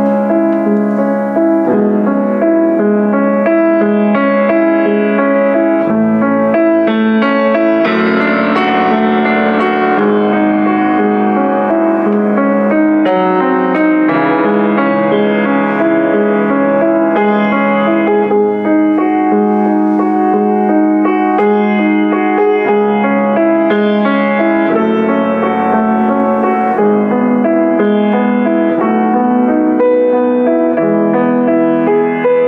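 Boston GP-156 baby grand piano played in a classical style: a continuous passage of chords and melody, notes held and ringing into one another, the harmony changing every second or two.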